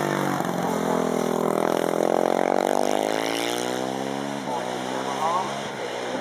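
Honda CR 450 racing motorcycle accelerating hard past and away. The engine note climbs for the first two seconds, slowly falls, drops sharply about four and a half seconds in, then climbs again.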